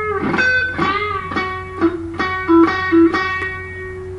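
Electric guitar playing a single-note country lead lick: picked notes about two or three a second, several of them bent in pitch, over a held ringing note. A low steady hum sits under it.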